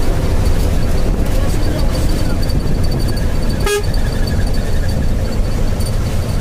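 Steady road and engine rumble heard inside a moving vehicle on a highway, with one short horn toot a little past halfway.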